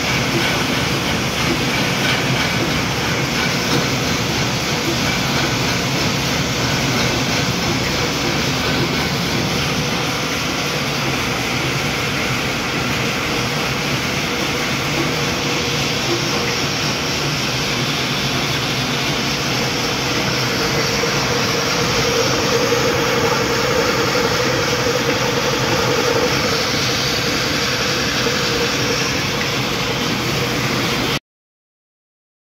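Belt-driven pulverizer flour mill (atta chakki) running together with its flat belts and line-shaft pulleys: a loud, dense, steady mechanical noise, with a stronger hum joining from about twenty seconds in.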